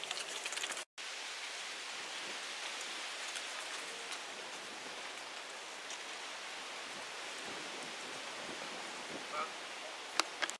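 Steady outdoor background hiss with a few faint ticks in it, broken by a brief dropout about a second in.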